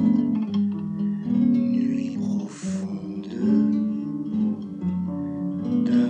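Instrumental music of plucked and strummed acoustic guitar chords, with a short hiss about two and a half seconds in.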